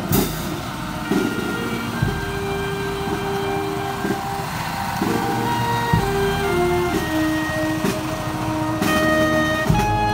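Marching brass band playing a slow melody: held brass and reed notes that change pitch about once a second, with a few bass drum strokes, louder near the end.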